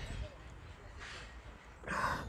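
Faint voices in the background with low rumble, and a short, loud noisy burst near the end.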